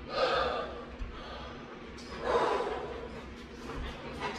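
A man's deep breaths, two long noisy breaths about two seconds apart, as he breathes in and out to empty his lungs before chugging a bottle of beer.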